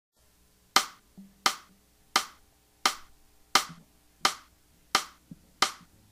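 Eight sharp percussive clicks, evenly spaced about 0.7 seconds apart: a steady count-in at the opening of a song.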